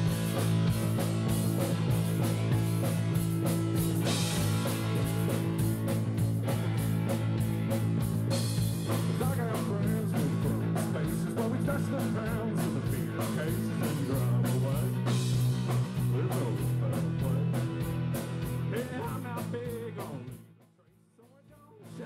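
Live rock band playing an instrumental passage on electric guitar, bass guitar and drums. Near the end the band stops dead for about a second, then comes back in.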